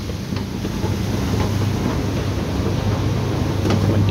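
Two-jug bottle-washing machine running: a steady low motor hum with the hiss of water spraying over the spinning nylon brushes scrubbing the jugs inside and out.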